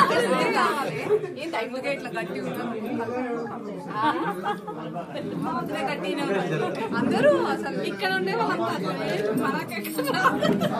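Overlapping chatter of several people talking in a room, with voices throughout.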